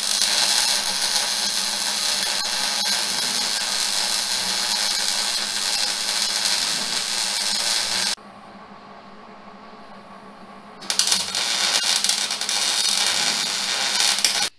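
Wire-feed (MIG) welder arc crackling steadily as a bead is run on a steel axle truss. It stops about eight seconds in and starts again about three seconds later for a second, shorter bead.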